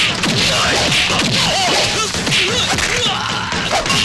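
Film fight sound effects: a dense, rapid run of punch whacks and swishing whooshes.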